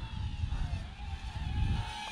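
Small quadcopter motors and propellers whining thinly, the pitch wavering up and down as the drone flies a funnel manoeuvre. A low rumble runs underneath.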